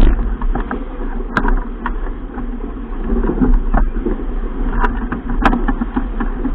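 Wind buffeting the microphone with water rushing past a heeled sailing keelboat, loud and unsteady, with sharp knocks and clicks at irregular moments, the loudest about halfway through and near the end.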